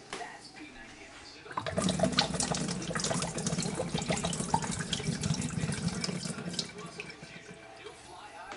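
Tap water running into a sink and over a glass held under the stream. It starts suddenly about a second and a half in and stops about five seconds later.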